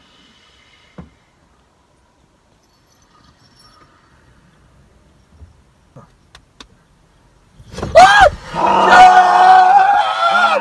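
A quiet car interior with a few faint clicks, then, about three-quarters of the way in, sudden loud screaming and yelling from a man startled awake.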